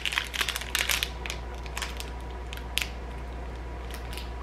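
Foil wrapper of a chocolate protein bar crinkling in a few quick bursts over the first second and a half, with one more near three seconds in, as the bar is bitten and chewed. A steady low hum runs underneath.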